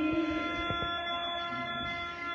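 Khaen, the Lao bamboo free-reed mouth organ, holding a sustained chord of several steady notes between sung phrases, with a few short pulses in the first second.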